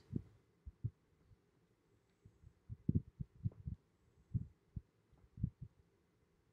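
Dry-erase marker writing on a whiteboard: a faint, irregular series of about a dozen soft low knocks as the marker tip strikes and drags on the board.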